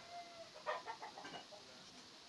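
Faint bird calls in the background: a short held note near the start, then a quick run of about five short calls around the middle.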